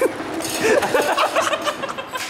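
People laughing and chuckling, with some voices mixed in.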